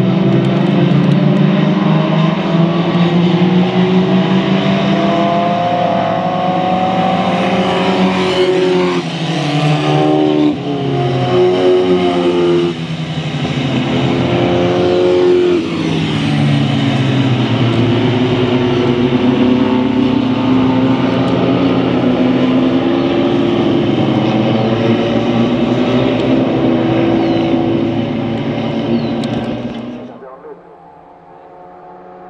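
Historic single-seater racing car engines revving as the cars race past, the engine notes rising and falling through gear changes. Several cars overlap around the middle, and the sound fades near the end.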